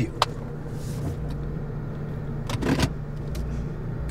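Steady low rumble of a running car heard from inside the cabin. There is a short click just after the start and a brief noise about two and a half seconds in.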